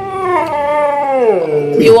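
A Siberian husky "talking": one long, drawn-out howling vocalisation that slides down in pitch toward its end. It is a husky's begging answer to being asked about food.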